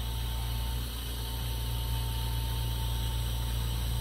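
Lampworking torch flame burning steadily: an even hiss over a low hum, with a faint steady whine that fades out near the end.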